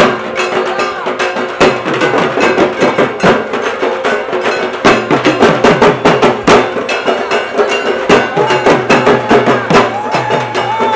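Dhak, the Bengali barrel drum, beaten with sticks in a fast, even run of sharp strokes for dancing, with crowd voices underneath.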